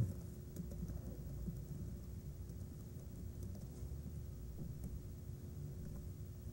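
Faint keystrokes on a computer keyboard as a line of code is typed, over a steady hum.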